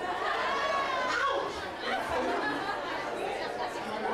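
Indistinct talking and chatter from several voices in a large, echoing club room.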